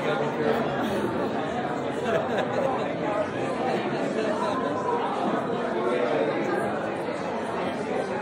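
Indistinct chatter of many people talking at once in a large hall, with no single voice standing out.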